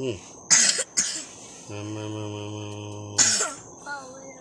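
A person coughing twice, hard, about half a second in and again near the end, with a steady low droning tone held for about a second and a half between the coughs. A thin, high, steady insect drone runs underneath.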